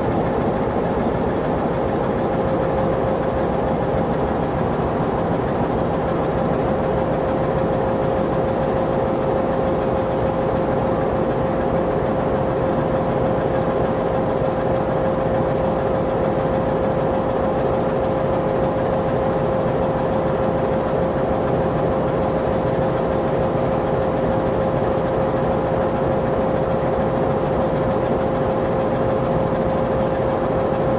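MLW-built CP 1550-class diesel-electric locomotive, an Alco 251 diesel engine, idling steadily while standing at the platform. A constant tone runs through the engine sound with no change in speed.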